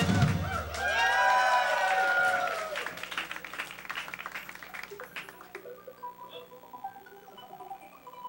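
Audience cheering and shouting right as a song ends, then clapping that dies away about halfway through, leaving the room fairly quiet.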